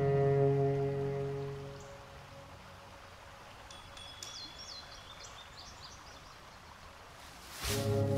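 A solo cello's held low note dies away. It gives way to a quiet recorded outdoor background with a few brief high bird chirps in the middle, from the piece's accompanying track of natural trail sounds. Near the end a short rush of noise comes, and the cello comes back in loudly on a sustained low note.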